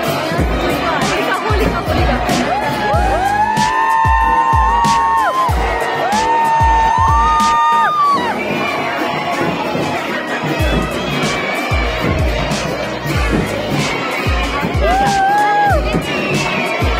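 Festival music of beating drums with long held notes from a wind instrument, stepping between pitches a few seconds in, then again briefly near the end, over a loud cheering crowd.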